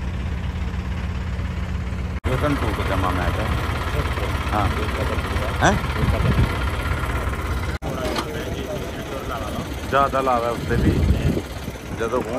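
Diesel engine running steadily at a low idle, with men's voices talking over it.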